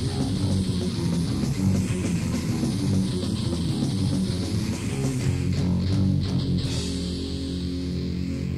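Death/black metal played by a band on a lo-fi 1996 cassette demo recording: distorted electric guitars and bass playing a riff. About two-thirds of the way through the high end thins out, leaving mostly guitars and bass.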